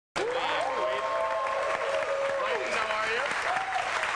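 Studio audience applauding, with cheering voices and a long whoop over the clapping.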